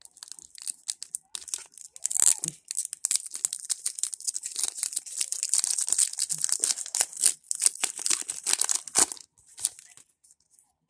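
Foil wrapper of a 2021 Panini Mosaic football card pack being torn and peeled apart by hand, the wrapper coming apart unevenly. It crinkles and crackles in a quick, dense run of ticks, with a sharp click near the end.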